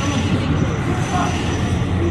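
Steady low rumble of a car engine and road noise close by, with indistinct voices over it.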